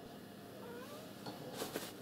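A faint, short wavering call that glides up and down in pitch, like an animal's call, followed near the end by a brief rustle of clothing as the man moves.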